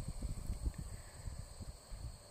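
Outdoor field ambience: a steady high insect trill from crickets, with irregular low rumbling from wind buffeting the microphone.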